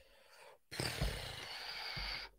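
A man's long breathy exhale, starting suddenly just under a second in and lasting about a second and a half.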